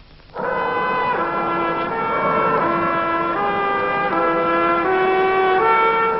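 Music: a slow melody on a brass instrument, a line of long held notes that begins about half a second in.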